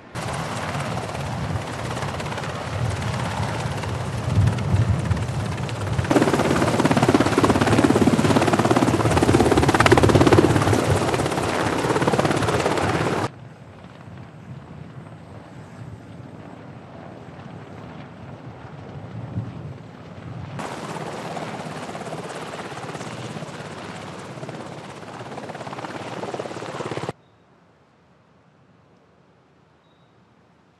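Helicopter rotor and engine noise, loud and steady. It steps up about a fifth of the way in, drops abruptly to a quieter level near the middle, rises again, and cuts off just before the end.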